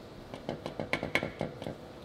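Mazda RX-8 Renesis rotary engine's eccentric shaft being shoved in and out by hand: a run of sharp metal clicks and knocks, a few with a short ring. The front thrust parts are not yet fitted, so the shaft moves freely with about half an inch of end play.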